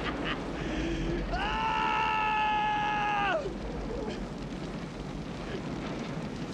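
A man's long, strained cry of pain, held at one pitch for about two seconds from about a second in, rising at the start and dropping away at the end, over a steady low rumble.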